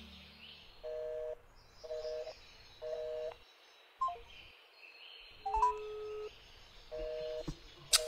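Telephone busy signal: a two-note tone pulsing on and off about once a second, interrupted midway by a few short higher beeps and a longer, lower single tone, ending in a sharp click.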